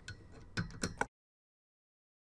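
Three small clicks and taps from a screwdriver being handled over a CPU heatsink on a motherboard. A little after a second in, the sound cuts off to dead silence.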